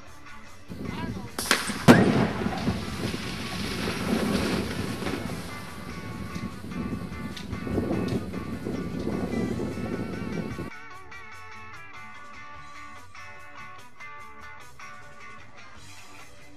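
A QSX-1 explosive charge detonating underwater at the bottom of a 650-gallon water barrel: one sharp blast about two seconds in, followed by about eight seconds of noise as the thrown-up water falls back, which cuts off suddenly.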